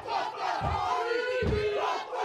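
A group performing a Māori haka: many voices shouting a chant in unison, with low stamps a little under a second apart.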